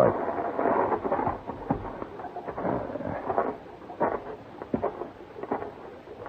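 Radio sound effect of a running mountain stream: a steady rush of water.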